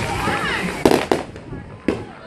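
Aerial fireworks bursting: three sharp bangs, two close together about a second in and one near the end.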